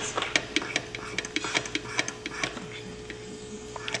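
The scraper on a 16mm Maier-Hancock hot splicer is worked across the end of the film, scraping off the emulsion to prepare a cement splice. It makes a quick, irregular run of small clicks and scratches over a faint steady hum.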